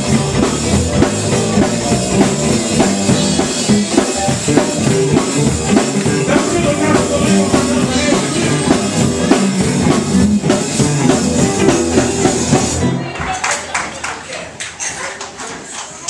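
Live gospel band playing loudly, with a drum kit and guitar, and a man singing into a microphone over it. The music stops abruptly about 13 seconds in, leaving quieter knocks and voices in the room.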